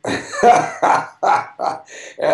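A man laughing heartily in a run of about five short bursts, the first the loudest.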